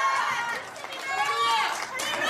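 Speech only: a man talking into a handheld microphone, heard through a PA in a large room, with an exclamation of "Hallelujah!" past the middle.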